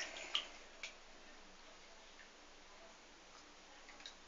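Two sharp clicks within the first second, the first louder, then faint room tone.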